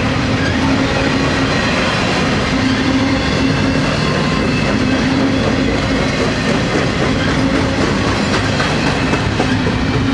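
Double-stack container cars of a freight train rolling past: a steady, loud rumble of steel wheels on rail with a steady low hum and faint repeated clicks as wheels cross rail joints.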